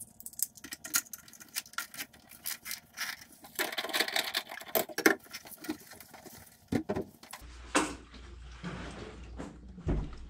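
Small metal hardware clicking and rattling in the hands, followed by the knocks and rubbing of a red plastic RotoPax fuel can being picked up and handled. About seven seconds in, a steady low hum comes in under a few more knocks.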